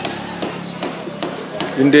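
A steady series of sharp taps, about two and a half a second. A man's voice starts near the end.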